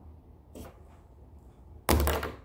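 Quiet room tone, then near the end a sudden loud whoosh of rustling noise lasting about half a second.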